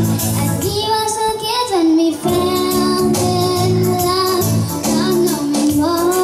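A young girl singing into a microphone with long held notes, over an electronic keyboard accompaniment with a steady, repeating bass pattern, amplified through PA speakers.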